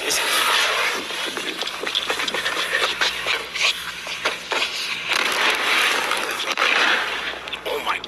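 Four aerial fireworks lit together on one fuse, burning at close range: a loud, continuous hiss of spraying sparks, broken by many sharp crackles and pops.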